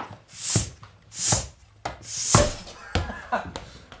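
Floor-standing bicycle pump worked in three strokes about a second apart, each a hiss of air ending in a low knock.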